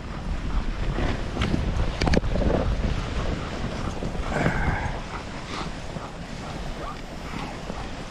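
Wind buffeting the microphone on a moving dog sled, over a steady rushing noise from the sled running on a packed snow trail behind a running dog team, with a sharp knock about two seconds in.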